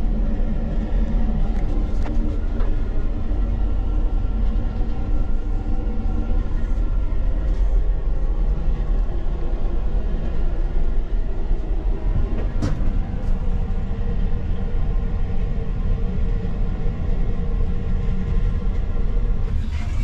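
Steady running noise of a moving electric commuter train heard inside its toilet cubicle: a constant low rumble with a faint hum and an occasional click, one of them about twelve seconds in.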